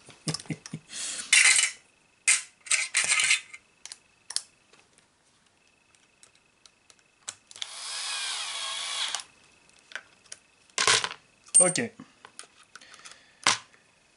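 Cordless drill/driver running for about a second and a half, its motor whine rising as it drives a screw into the plastic rear hub carrier of an RC truck. Sharp clicks and knocks of small plastic parts being handled come before and after it, the loudest of them a few seconds after the drill stops.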